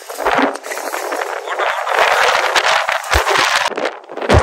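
Metal shopping cart loaded with grocery bags rolling over concrete and asphalt, its wheels and wire basket rattling in a dense, steady clatter.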